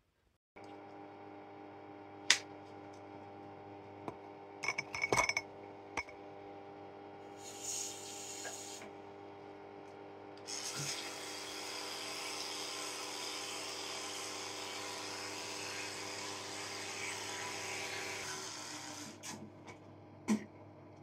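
Electric toothbrush running with a steady hum. From about ten seconds in, the brush scrubbing in the mouth adds a hiss. The hum stops shortly before the end, and a few clicks and taps in the first few seconds come from handling the toothpaste tube and brush.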